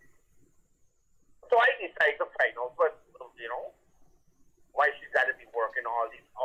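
Speech only: a voice talking in two stretches with a pause of about a second between them, thin and band-limited as a caller's voice over a phone line.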